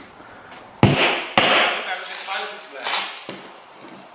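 Two sharp hammer blows on a tool set against a car windscreen, a little over half a second apart, each followed by the crackle and crunch of the glass breaking up, with a further crunch near the end.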